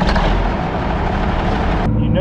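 Diesel engine of a John Deere grain-cart tractor running steadily, heard close to its exhaust stack with a loud, even rushing noise over the low rumble. Near the end the rushing cuts off abruptly.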